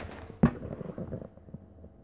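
A single sharp knock about half a second in, followed by faint handling sounds.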